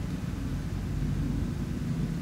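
Steady low background rumble with a faint hum in it, unchanging and with no distinct handling sounds.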